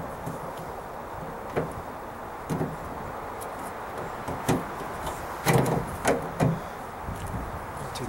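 A replacement tailgate handle knocking and clicking against the tailgate's sheet metal as it is wiggled into its opening on a 1995 Dodge Ram pickup. Scattered single knocks, with the loudest cluster of three between about five and a half and six and a half seconds in.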